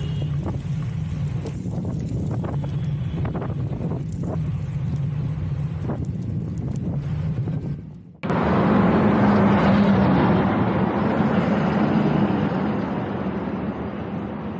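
Wind rushing over the camera microphone with a low road-tyre rumble from a moving road bike, buffeting now and then. About 8 s in, the sound cuts to louder highway traffic noise with a steady engine drone from a passing truck, which swells and then slowly fades.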